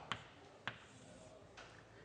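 Chalk tapping against a blackboard while writing: two short sharp taps, a little over half a second apart, against a quiet room.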